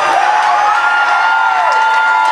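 Audience cheering, with two long high-pitched whoops held for over a second before they drop away.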